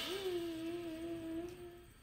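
A single note hummed by a voice, starting with a slight upward slide and held steady for nearly two seconds before stopping.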